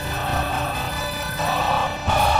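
Music: a choir singing with instrumental accompaniment, held notes over a low steady beat.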